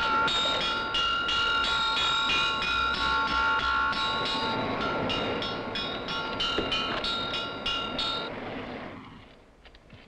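Air-raid alert sounded on a metal alarm struck rapidly, about three strokes a second, its ringing tones carrying on under the strokes. The beating stops about eight seconds in and the ringing fades away.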